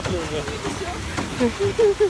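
A woman's voice, without clear words, over a steady background hiss from wind and water.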